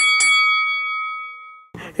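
Bell sound effect struck twice in quick succession, then ringing out and fading over about a second and a half.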